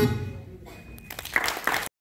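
The Carnatic music accompanying a Bharatanatyam dance ends and its last note fades out. About a second later scattered hand claps begin and build into audience applause, which cuts off suddenly just before the end.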